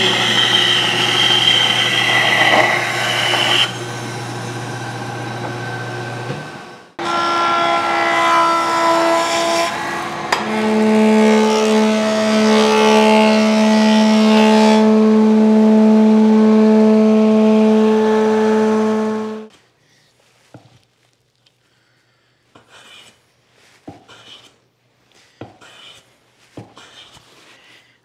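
A bandsaw ripping a walnut board, the cut ending about four seconds in, after which the saw runs on with a steady hum until it stops at about six seconds. A thickness planer then starts with a steady, pitched machine hum that gets louder at about ten seconds and cuts off sharply about two-thirds of the way through. The rest is quiet, with a few light knocks of wood being handled on a bench.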